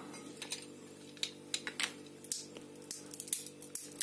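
Scattered light clicks and clinks of hands handling walnut shells on a china plate and of a steel pipe wrench being picked up and fitted onto a walnut half, over a faint steady hum.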